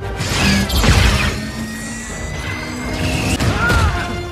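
Movie fight-scene soundtrack: a music score with crashing impact sound effects, the densest crashes about a second in.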